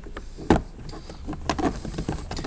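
A single sharp clunk about half a second in, with a few lighter clicks around it, over a low steady hum: the tool-kit cover and its fastener in a car's boot lid being handled.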